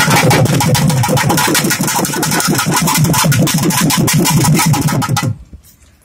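Double-headed barrel drum (dhol) beaten in a fast, dense run of strokes, which stops abruptly about five seconds in.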